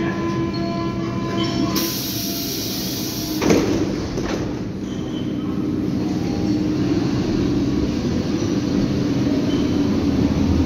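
Berlin U-Bahn train at the platform: a hiss starts about two seconds in, and the sliding doors shut with a thud about three and a half seconds in. Then a steady hum builds as the train pulls away.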